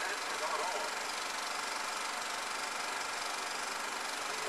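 Steady whirring hiss of a film projector running, with faint muffled voices from the film's soundtrack about half a second in.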